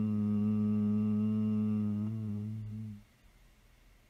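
A low voice humming one long, steady note, which fades out about three seconds in.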